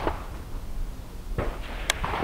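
Low, steady wind rumble on the microphone, with one sharp click just before the end.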